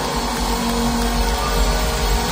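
A live band playing a loud passage, with a few held notes over a heavy pulsing bass, heard through the room of a large concert hall.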